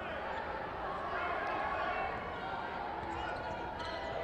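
Gymnasium game sound during a high school basketball game: a basketball bouncing on the court under a steady background of crowd noise and faint voices.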